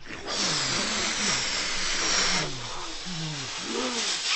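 A loud rushing hiss, like air escaping, lasting about two seconds, with short falling groans repeating over it and carrying on after the hiss fades.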